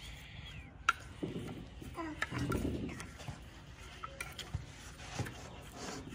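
A plastic spoon stirring chopped spinach and ground spices in a plastic bowl: soft scrapes and scattered light clicks, the sharpest about a second in. A voice is faintly heard in the background around the middle.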